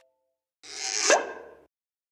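A short logo sound effect: a whoosh that swells in about half a second in, with a pitch sweeping upward to a peak, then fades out about a second later.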